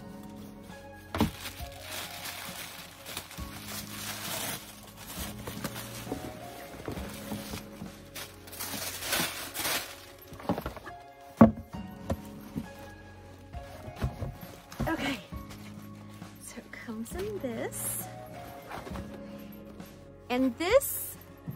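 Background music with rustling and crinkling of packaging as a large cardboard box and its paper-wrapped contents are unpacked. A single sharp knock about eleven seconds in is the loudest sound.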